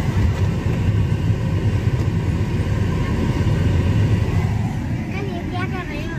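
Strong airflow from a Tata Vista's AC blower vent blowing straight onto the microphone: a loud, steady, rumbling wind noise. The blower is on third speed with recirculation, and the air throw is stronger now that a new AC cabin filter has been fitted.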